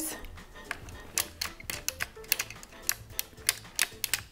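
Dean and Bean circular sock machine being hand-cranked, its latch needles clicking as they ride up and down through the cam while knitting the first rows of a cast-on. The sharp clicks start about a second in and come roughly three to four a second.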